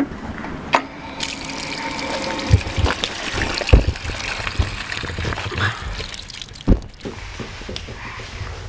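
Water running from a push-button cast-iron street fountain onto a metal drain grate. A click comes about a second in as the button is pressed, with a brief hum in the pipe, then a steady rush of water. A few low thumps are heard along the way.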